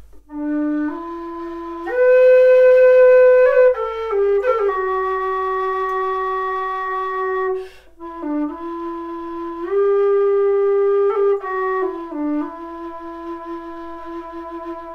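Low D whistle playing a slow, ornamented melody in two phrases, with a brief breath break just before the halfway point and quick grace-note flicks between the held notes.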